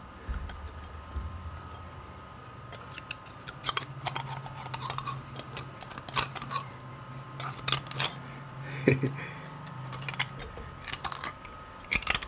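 A metal table knife scraping and clicking against the inside of a cooked beef marrow bone as the marrow is dug out. The clicks come scattered at first and grow more frequent toward the end.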